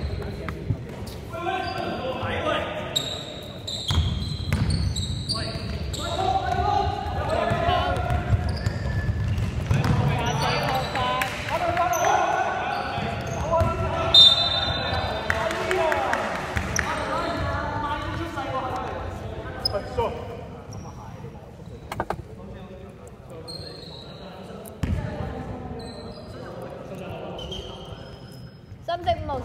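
Indoor basketball game echoing in a large gym: the ball bouncing on a hardwood floor, shoes squeaking, and players calling out. It grows quieter in the last third as play stops.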